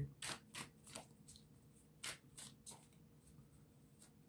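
A deck of tarot cards being shuffled by hand: faint, short swishes of cards sliding against each other, three in the first second and three more around two seconds in.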